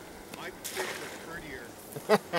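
Faint voices speaking a few short words over a quiet outdoor background.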